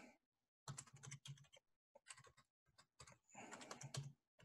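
Faint typing on a computer keyboard: a short run of keystrokes about a second in and another near the end.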